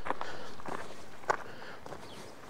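Footsteps on a loose stony path, a few irregular steps over gravel and rock.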